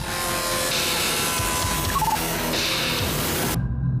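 Soundtrack music with a loud rushing, hissing sound effect laid over it, with a few short high blips about two seconds in; the rushing cuts off abruptly about three and a half seconds in.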